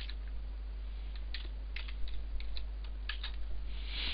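Computer keyboard keys being typed in an irregular run of about a dozen clicks, entering a number, over a low steady hum.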